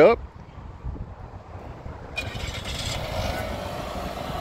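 A 2023 Chevrolet Equinox's 1.5-litre four-cylinder engine, remote-started from the key fob, catches about halfway in and settles into a steady idle.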